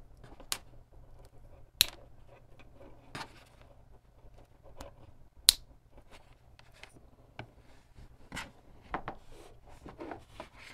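Plastic lever-type wire connectors being handled, their levers snapping open and shut on the test cables: several sharp clicks, the loudest about five and a half seconds in, with softer handling noise between.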